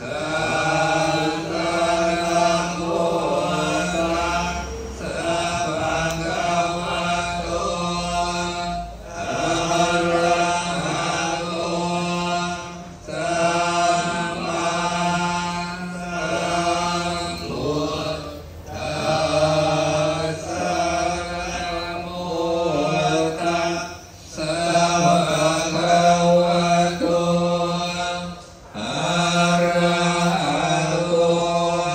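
Thai Buddhist monks chanting Pali scripture in a steady monotone. The chant runs in long phrases broken by short breath pauses every few seconds.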